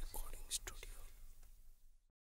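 A faint whispered voice with a few hissy sounds in under the first second, fading out over a steady low hum and cutting to silence at the end.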